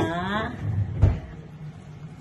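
A woman's voice trailing off, then a soft low thump and a single sharp knock about a second in, like a hard object or a cupboard door knocking in a kitchen.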